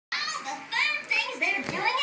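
Only speech: a high-pitched cartoon character's voice, played from a television, saying a line about imagining the fun things at game night.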